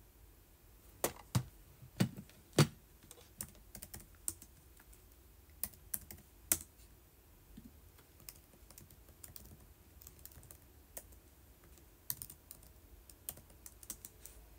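Irregular clicks and taps of fingers typing on a device, with four louder knocking taps in the first few seconds and lighter scattered clicks after.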